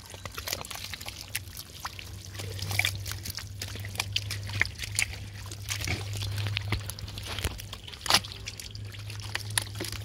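Thick wet mud squelching and sucking as hands and boots dig through a mudflat, with many small wet pops and clicks and one sharper pop about eight seconds in, over a low steady hum.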